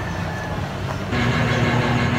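A steady low mechanical hum with background hiss that steps up in level about a second in, where a steady higher tone joins it.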